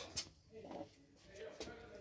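Mostly quiet room tone, with a brief faint sound just after the start.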